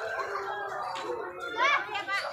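A crowd of children chattering and calling out, with one loud, high-pitched shout near the end.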